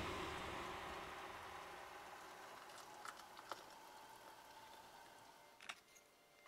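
A steady, even noise that fades steadily away, with a few faint light clicks about three seconds in and a sharper double click near the end.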